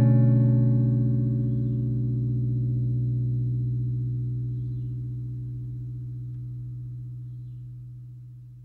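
Background music: a single held guitar chord, struck just before, ringing on and slowly dying away.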